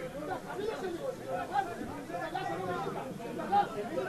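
Several people's voices talking and calling at a distance, overlapping, with one louder shout near the end.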